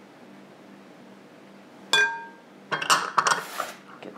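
Kitchen glassware: a single ringing clink of glass on glass about halfway through, followed by about a second of clattering as dishes are moved and set down.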